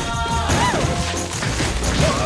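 Animated-film soundtrack: music running under crashing and thudding sound effects, with a few quick rising-and-falling pitch glides about half a second in.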